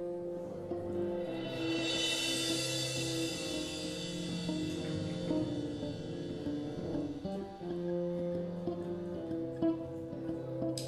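Live band playing an instrumental jazz number: electric guitar, bass, keyboard, drums and saxophone, with long held notes that change every second or so.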